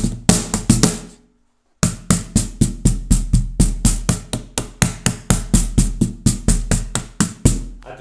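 Homemade plywood cajon slapped by hand, its internal string snare buzzing under the hits. A few deep bass strikes in the first second, then after a short pause a quick, even run of about four strikes a second on the snare area.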